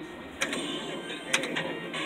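Electronic tones and effects from a pirate-themed skill game machine as coins are picked on its touchscreen bonus screen, with two sharp clicks about a second apart.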